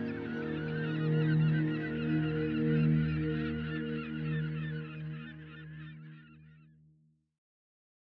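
A flock of birds calling, many quick calls overlapping, over a steady low drone. It all fades out to silence about seven seconds in.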